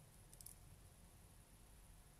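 Near silence: room tone, with a brief cluster of faint clicks about half a second in from a metal eyelash curler being squeezed on the lashes.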